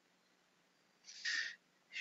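Near silence, then about a second in a single half-second breath drawn in through the mouth just before speaking.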